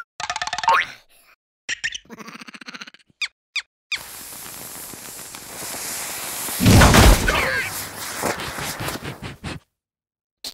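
Cartoon sound effects: short squeaky character vocal noises and whistle-like glides, then a lit firework rocket hissing, with a loud whoosh about seven seconds in, cutting off suddenly just before the end.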